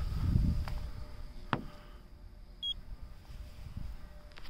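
Paint thickness gauge giving one short high beep about two-thirds of the way in as it takes a reading, after a sharp click and some rubbing handling noise.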